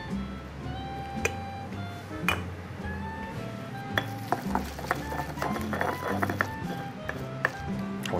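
Granite pestle pounding roasted green peppers with salt in a granite mortar: scattered knocks early on, then a quick run of light clicks and knocks from about halfway through. Background music plays throughout.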